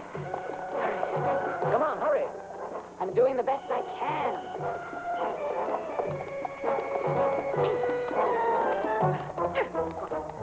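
Film soundtrack music with a steady low beat, over a dog's yelps and whimpers that rise and fall in pitch.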